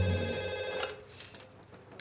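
Corded desk telephone ringing with a steady, many-toned ring that stops about a second in as the handset is picked up.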